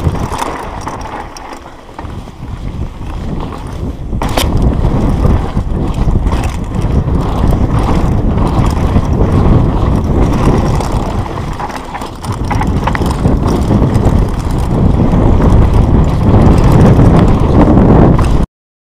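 Mountain bike descending a dry dirt trail at speed: wind buffeting the camera microphone over the rumble and rattle of tyres and bike on loose ground, easing off briefly around two and twelve seconds in. A sharp knock about four seconds in.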